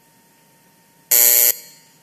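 An electric chamber buzzer sounds once, a harsh, loud buzz about half a second long that stops abruptly and leaves a short echo in the hall. It marks the end of a minute of silence.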